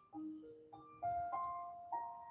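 Quiet background piano music: a few single notes struck one at a time, each left to ring and fade.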